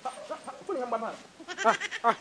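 A voice going "ha.. ha.." with a wavering pitch, fairly quiet, and running on into words.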